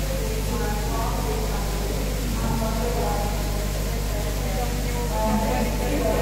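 Indistinct voices of people talking, in several short stretches, over a steady low hum.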